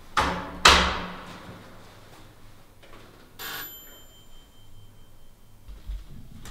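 An apartment doorbell rings once about three and a half seconds in, a short high ring that lingers for about two seconds. It follows two loud rustles in the first second. A low thump near the end comes as the door is unlatched and opened.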